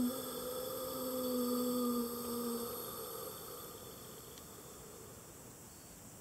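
A steady low humming tone with overtones, swelling slightly and then fading away over the first few seconds.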